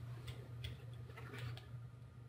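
Quiet room with a steady low hum and a few faint, irregular clicks and taps.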